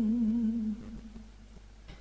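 A voice chanting Vietnamese verse in the ngâm style holds the end of a line on one wavering note, which stops about three-quarters of a second in.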